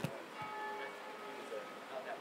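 Church bells tolling, their ringing notes hanging in the air and fading, with a soft thump right at the start.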